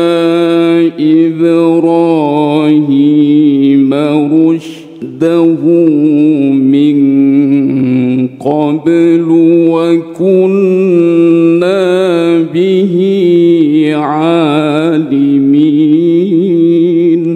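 Qur'an recitation in the melodic tilawah style: one voice sings long, drawn-out phrases with ornate, wavering held notes, pausing briefly for breath a few times.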